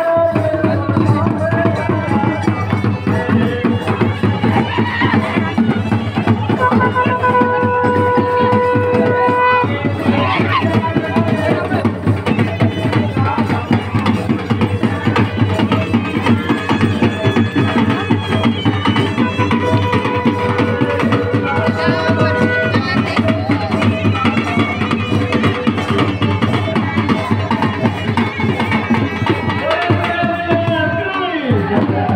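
Traditional procession music: fast, continuous hand-drumming with a wind instrument holding long steady notes, once about a quarter of the way in and again past the middle, over crowd voices.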